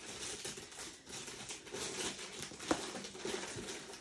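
Soft crinkling and rustling of tape backing paper being handled and peeled on a tin, with small ticks and one sharper click a little past halfway.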